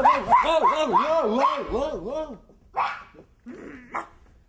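A performer's voice giving a quick run of rising-and-falling yelps, about four a second, for about two seconds, followed by a few short, quieter sounds.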